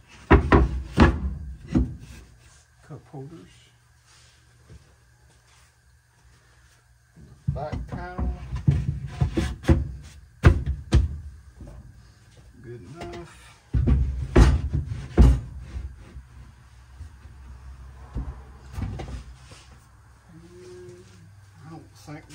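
MDF boards being handled and set into a wooden console, wood knocking and thudding against wood in three bouts with quiet gaps between.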